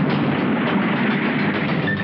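An open jeep's engine running as it drives over rough ground: a steady rumble with rapid rattling clicks.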